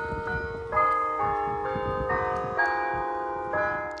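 Church bells ringing: a run of struck bell tones, about two a second, each ringing on and overlapping the next.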